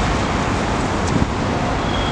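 Steady street traffic noise mixed with wind on the microphone, with a short bump about a second in.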